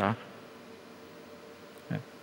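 A pause in a man's speech: faint room tone with a steady low hum. The last word trails off at the very start.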